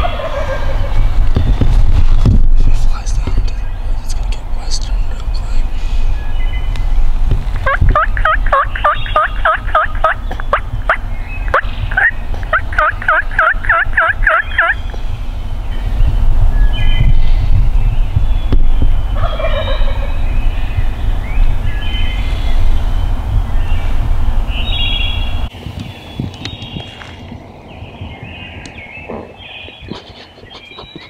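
Wild turkey gobbling from the roost: two runs of rapid rattling gobbles, the first about eight seconds in and the second a few seconds later, with other birds calling around them. A loud low rumble runs underneath and drops away sharply about 25 seconds in.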